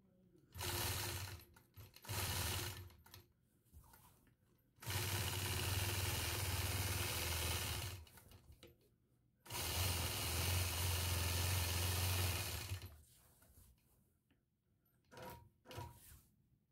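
Quilting machine stitching in stop-and-go runs: two short runs early, then two longer runs of about three seconds each, and a couple of brief spurts near the end, with quiet pauses between. It is stitching straight lines in the ditch along a ruler around the outside of the block.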